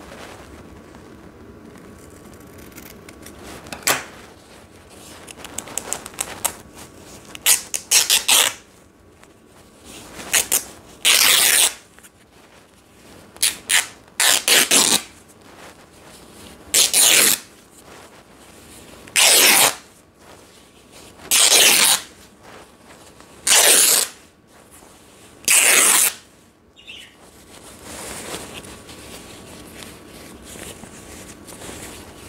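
Scissors cutting fabric into long strips: a few scattered snips first, then a steady run of about seven cuts, each under a second long, coming roughly every two seconds.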